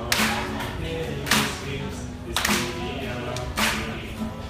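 Acoustic guitar played without vocals, chords ringing between sharp percussive strums that land about once a second, four in all.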